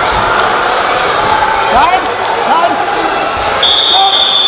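Hall crowd noise with shouts from coaches and spectators and thuds of wrestlers' bodies on the mat. Near the end a high, steady whistle blast begins as the clock stops at the end of the period.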